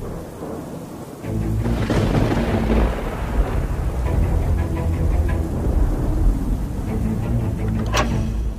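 Thunder rumbling with rain under background music. The thunder swells in about a second in and keeps rolling.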